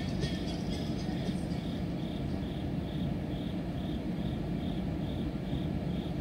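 A cricket chirping steadily, about two short high chirps a second, over a low steady rumble of background noise.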